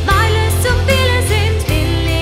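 A woman singing a song in German with vibrato, over instrumental backing with a steady bass.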